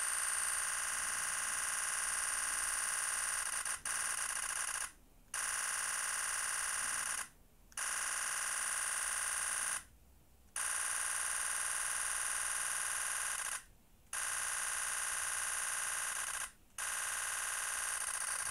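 Nikon Z9 shooting continuous bursts at 20 frames a second, its shutter sound a rapid, buzz-like stream of clicks. There are six bursts, with five short pauses where the shutter button is released.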